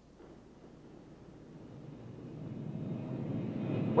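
Jet aircraft flying over in formation, their engine noise growing steadily louder as they approach.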